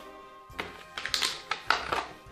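Soft background music with a few sharp taps and knocks of a plastic blister pack being handled, the loudest coming in the second half.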